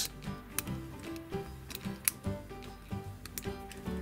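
Small plastic clicks and taps, about ten scattered through, as Playmobil helmet parts (visor and plume) are pressed onto a knight figure by hand, over steady background music.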